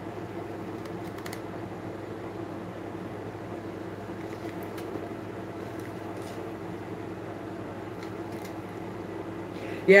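Steady low mechanical hum of room background noise, with a few faint clicks from handling a zippered bag.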